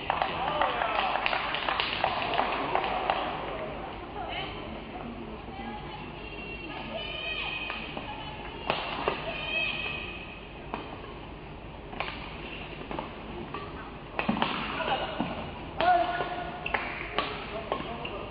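A badminton rally: sharp racket strikes on the shuttlecock and shoe squeaks on the court, over the crowd's background noise. The crowd noise grows louder with shouts as the point ends, a few seconds before the end.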